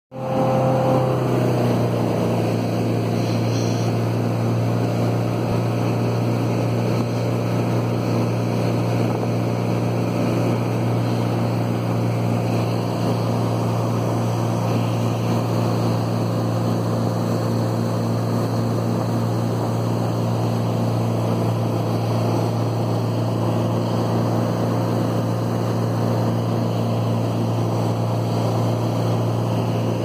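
Ski boat engine running steadily at towing speed, with water rushing in the wake.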